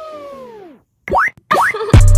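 Edited-in sound effects: a held tone bends downward and dies away, then after a brief gap come two quick rising boing-like swoops.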